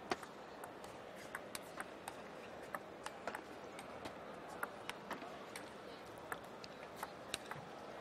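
Table tennis ball clicking off the rackets and the table through a rally, a sharp tick about twice a second at an uneven pace, over a low steady hall background.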